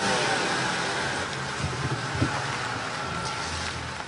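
Heard from inside a moving car in the rain: a steady rush of rain and road noise over a low engine hum, beginning suddenly.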